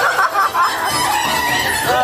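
Dark-ride soundtrack: high, warbling, squawk-like cartoon sound effects over music.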